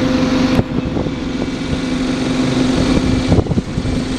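A single-decker bus's diesel engine idling at a stop: a steady low hum, with a couple of brief knocks, one near the start and one just before the end.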